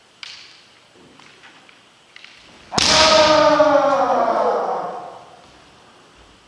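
Kendo exchange: a sharp knock and light clacks of bamboo shinai, then about three seconds in a sudden hit together with a loud kiai shout, held for about two seconds and falling in pitch as it fades.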